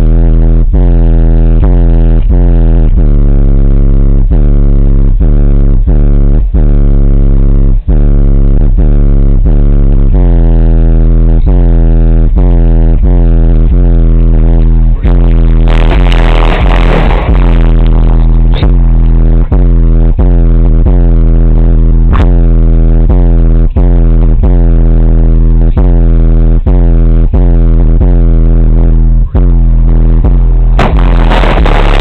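Bass-heavy music played very loud through a single 12-inch Rockford Fosgate T2 subwoofer driven by a JL Audio 1000/1v2 amplifier, overloading the microphone, with a beat about twice a second. About halfway through there is a burst of hissy handling noise.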